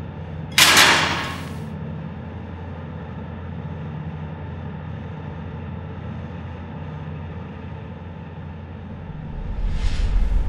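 Sound-designed soundtrack. A sudden loud hit comes about half a second in and fades over a second, over a steady low drone. Near the end a rising whoosh with a deep boom builds.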